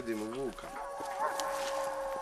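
Rooster crowing: one long wavering crow that starts about half a second in and lasts about two seconds.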